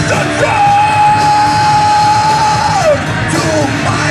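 Live rock band playing with electric guitars, bass and drums, loud and dense. Over it the singer yells one long high held note for about two seconds, which then slides down.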